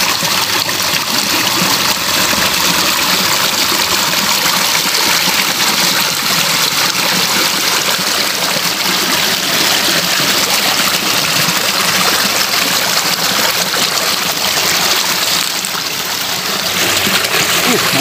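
Shallow ditch water rushing and burbling over stones as a steady, loud flow, easing briefly near the end.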